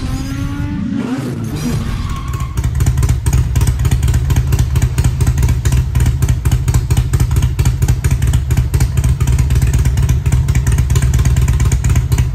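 A short swooshing logo sound effect with gliding tones, then from about two seconds in a Harley-Davidson Twin Cam 95 ci V-twin with Vance & Hines exhaust idling steadily with a fast, even pulse.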